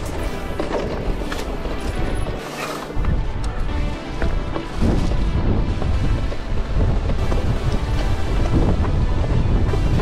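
Strong gusting wind buffeting the action camera's microphone on a mountain bike, a low rumbling roar that drops briefly about two and a half seconds in; gusts strong enough to nearly knock the rider off. Background music plays underneath.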